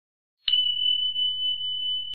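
Subscribe-button sound effect: a sharp click about half a second in, then a steady high-pitched ringing tone that holds without fading.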